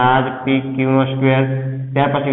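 A man's voice speaking in slow, drawn-out syllables.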